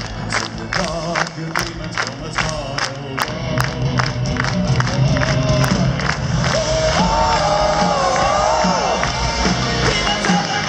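Festival crowd clapping in time, about two and a half claps a second, over heavy-metal band music from the stage PA. Near the end a long sung note is held over the claps and music.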